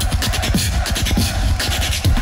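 A beatboxer's battle routine, amplified through a microphone and PA: deep kick-drum-like bass hits and sharp hi-hat-like clicks in a fast, steady electronic dance beat.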